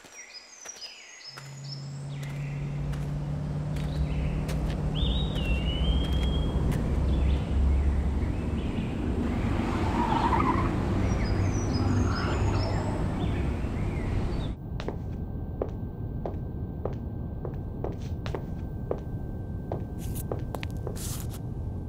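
Birds chirping over a low rumble that swells in about a second in and grows loud. About three-quarters through the rumble cuts off to a quieter sound with a thin steady high tone and scattered clicks.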